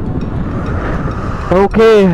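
Steady wind rush and engine noise of a motorcycle riding at road speed, heard from the rider's position. A man starts talking about one and a half seconds in.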